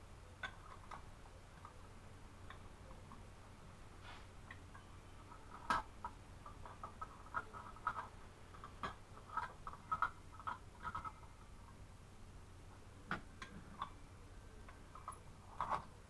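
Lids being screwed finger tight onto glass jars of jam and the jars being handled: scattered light clicks and taps, with a run of quick clicks in the middle and a few sharper clicks.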